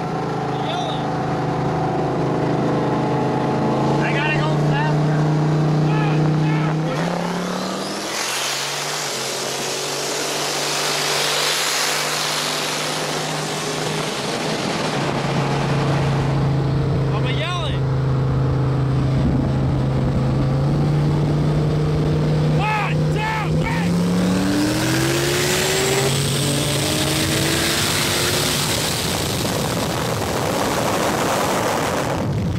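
High-powered sports car engines on a highway run: a steady engine drone climbs in pitch as the cars accelerate hard, with long loud stretches of engine, wind and tyre rush. There are a few short chirps in the middle.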